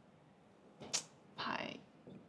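Whiteboard marker writing on a whiteboard: a quick sharp stroke about a second in, then a longer squeaky stroke.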